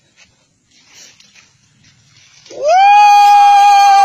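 A loud, long cry in a person's voice, starting about two and a half seconds in, rising in pitch and then held on one steady note.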